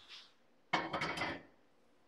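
A short clatter of kitchen items being handled, lasting under a second, with a few sharp clicks in it.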